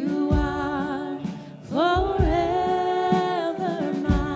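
Live worship band playing, with vocalists singing two long held notes over drums, guitars and keyboards; the second note slides up into place about halfway through.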